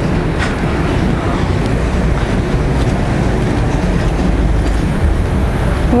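Steady low rumble of roadside street noise beside a main road, with no single event standing out.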